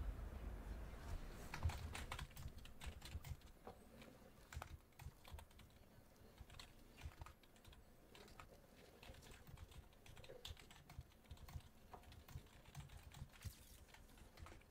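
Faint, irregular clicking of typing on a computer keyboard, several keystrokes a second. A low rumble dies away in the first two seconds.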